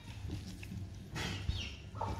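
A few brief high-pitched animal calls over a low steady hum, with a short rustle just before them.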